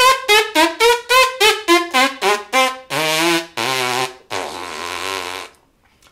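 A trumpet player's spit buzz, the lips buzzing without the horn: a quick run of about a dozen short tongued buzzes, then three longer buzzes, each lower than the last, the last the longest. A strong, centered buzz, which the player offers as a demonstration of compression.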